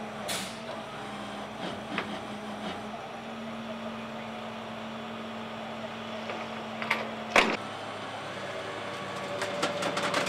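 A steady low hum from an idling vehicle engine, with a few faint clicks and a sharp knock about seven seconds in, after which the hum stops.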